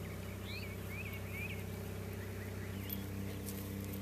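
A steady low machine hum, like a distant engine running, whose tone shifts slightly near the end, with a bird chirping four or five short notes in the first half.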